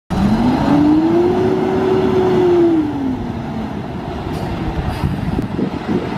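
A 2014 International ProStar tractor's N13 diesel engine pulling away. The engine note rises for about a second and a half, holds, then drops about three seconds in, after which the truck is quieter as it moves off.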